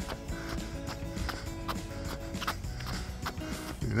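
Running footsteps on pavement, a steady stride of about two to three steps a second, over steady background music.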